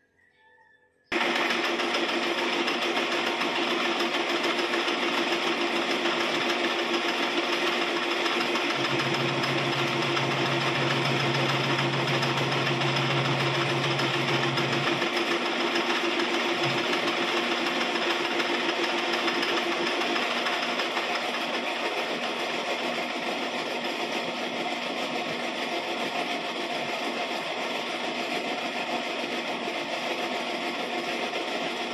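Metal lathe running steadily, its motor and headstock gearing giving a constant mechanical whine. It starts abruptly about a second in, and a low hum is added for several seconds midway.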